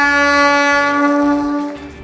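Locomotive horn blowing one long, steady blast that fades out near the end.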